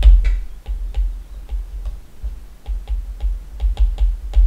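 Stylus tapping and scratching on a tablet during handwriting: irregular small clicks, a few a second, with dull low knocks.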